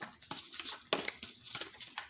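A deck of tarot cards being shuffled by hand: a run of short, crisp snaps and flicks as the cards slap together, irregularly spaced, a few a second.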